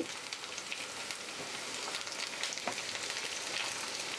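Sliced onions and ginger-garlic paste frying in hot oil in a nonstick kadhai: a steady sizzle with light crackling as a silicone spatula stirs them.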